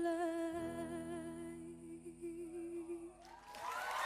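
A girl's singing voice holding one long final note with a slight waver over a soft accompaniment, fading out about three seconds in. Near the end a rising swell of noise comes in as the song ends, the start of audience cheering.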